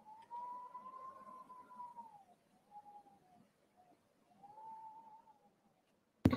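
Faint, thin whistling tone that rises and falls in slow arches, one long swell followed by shorter ones, from the background sound bed of a narrated story recording.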